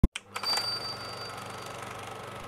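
Opening sound effects of an animated intro: a sharp click and a few quick hits, then a high ringing tone that fades within about a second, leaving a steady low hum that leads into the intro music.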